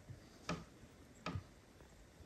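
Two short, soft clicks about three quarters of a second apart, over a quiet room background.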